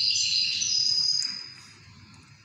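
Caged songbird singing a steady, high-pitched trill that fades out about one and a half seconds in.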